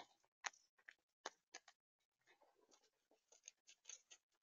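Gray squirrel eating seed mix up against the microphone: a run of small crunching clicks. Two sharper cracks come in the first second and a half, then after a brief pause a denser patter of clicks.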